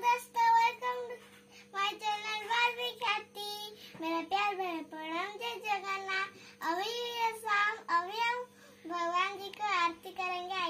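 A young girl's voice singing in short phrases with sliding, sometimes held pitch, over a faint steady hum.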